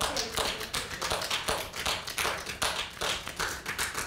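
Several people's hands tapping quickly and unevenly on a wooden floor, a dense run of overlapping light taps several times a second.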